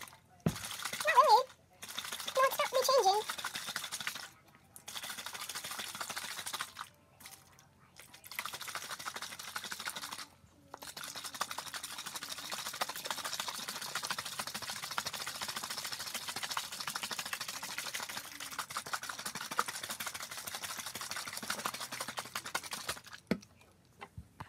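Water sloshing inside a capped plastic baby bottle as it is shaken, in several bouts with short pauses between them, the longest lasting about twelve seconds near the end. A child's voice is heard briefly in the first few seconds.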